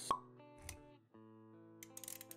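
Animated-intro sound effects over soft music: a sharp pop with a short ping just after the start, then held synth-like notes, with a short low thud a little later and a brief drop-out about halfway through.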